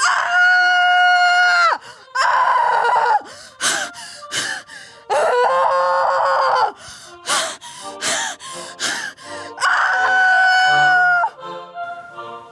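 A woman screaming: four long, high, held screams, with sharp knocks between them.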